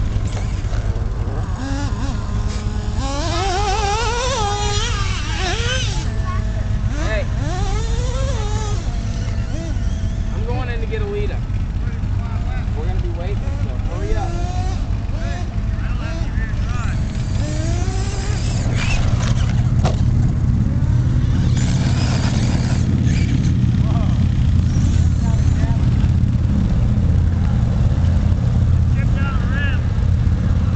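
Electric RC truck's motor whining, its pitch rising and falling in quick glides as it is driven around the dirt track. Under it is a steady low engine rumble that grows louder about two-thirds of the way through.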